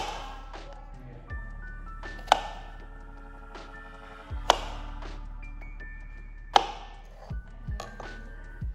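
Background music, with a sharp knock about every two seconds: a kitchen knife cutting through strawberries onto a plastic cutting board.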